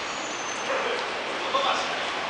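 Steady hubbub of a busy indoor shopping-mall concourse, with short high-pitched calls about a second in and again near the end.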